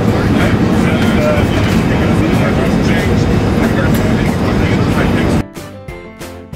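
Steady loud airliner cabin noise in flight: the low rumble of engines and airflow, with passengers talking underneath. About five seconds in it cuts off abruptly and background music with a regular beat takes over.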